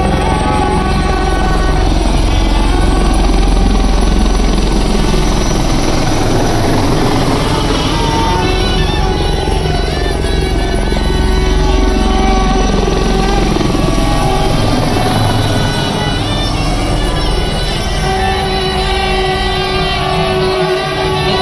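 Helicopter flying low overhead, its rotor beating steadily, with music playing underneath. The rotor beat is strongest for the first three quarters and fades somewhat near the end.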